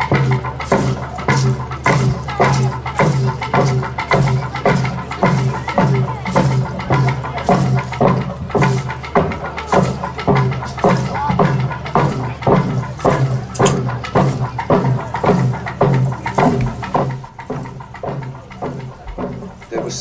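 Men and women of Daru, Papua New Guinea, singing together over a steady drum beat of about two strokes a second; it drops in level a few seconds before the end.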